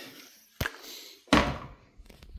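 A short sharp knock, then a heavier thud with a brief ring-out a moment later, the louder of the two.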